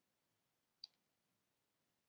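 Near silence, broken by one short, faint click a little under a second in.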